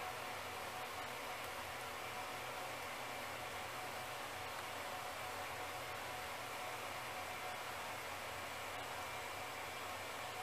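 Steady, even hiss with no distinct events: the recording's background noise.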